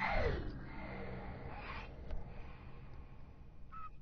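Logo sting sound effect: a sudden whoosh with a fast falling pitch sweep that fades out over about two seconds, then a faint click and a short beep near the end.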